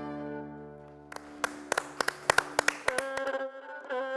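Cretan folk music on laouto and Cretan lyra. A sustained chord fades out, then single plucked laouto notes ring out, and about three seconds in the bowed lyra comes in with a long held note.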